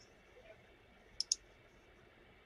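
Two quick clicks of a computer mouse in close succession, a little over a second in, against quiet room tone.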